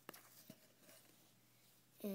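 Near silence: room tone, with two faint clicks early on in the first half second.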